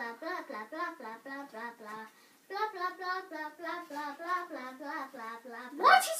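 A child singing a quick sing-song run of short syllables, with a brief pause about two seconds in.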